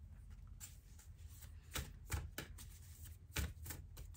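Oracle cards being handled in the lap: a few faint, short taps and slides of card stock as the cards are moved and laid down.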